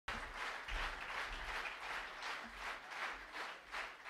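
Audience applause from a live concert crowd, a steady patter of clapping that swells and dips, before the band starts playing.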